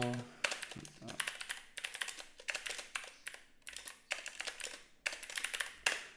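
Typing on a computer keyboard: quick bursts of keystrokes with short gaps, as a shell command is entered, with a sharp final keypress near the end.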